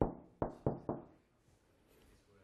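Chalk knocking against a board while an equation is written: four sharp taps about a quarter second apart, all within the first second.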